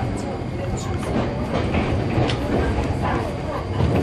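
Inside an Iyo Railway Takahama Line electric train running just after departure: a steady low rumble with a few sharp clicks from the wheels and track. The train is crossing the 750 V to 600 V voltage-change section at this moment.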